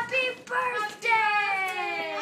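Young women's high-pitched voices in a drawn-out, sing-song exclamation: short calls, then a long note sliding downward from about a second in.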